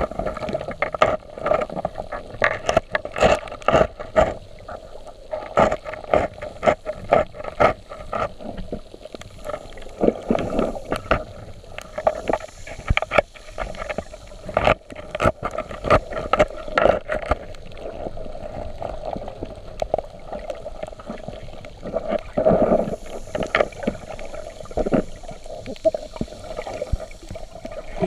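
Muffled underwater sound: many sharp clicks and knocks, denser in the first half, over a steady hum.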